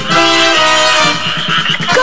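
Instrumental background music: held notes that change pitch every half second or so.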